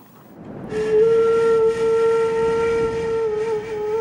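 A single long, steady tone at one pitch, like a horn or whistle, that swells in within the first second and then holds, over a faint rushing noise.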